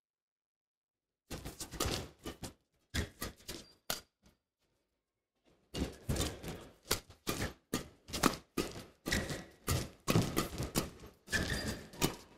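Badminton rackets striking a shuttlecock in a fast doubles rally: a few scattered hits after about a second, a short pause, then a quick run of sharp hits from about six seconds in.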